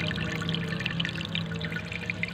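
Water pouring and trickling into a pond, with many small splashes and drips, over a steady low hum.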